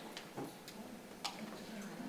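A few faint, short clicks and taps, about four in two seconds, over quiet room tone with a faint murmur of voices.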